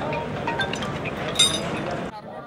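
Outdoor background noise with a single bright, ringing metallic clink about one and a half seconds in.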